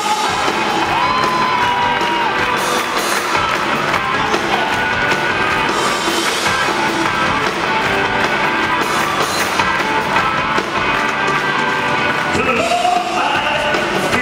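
Live rock and roll band playing with a male singer, with held sung notes about a second in and again near the end.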